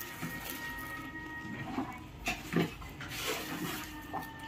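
A Labrador retriever sniffing at potted plants: a few short snuffles about two seconds in, then a longer one near the end.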